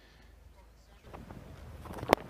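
Faint background sound of a cricket ground picked up by the broadcast microphones: quiet at first, growing a little louder about halfway, with a few faint knocks.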